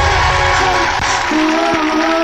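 Live band music starting up: low rumbling notes give way to sustained, held chords about halfway through, with a single sharp hit near the end.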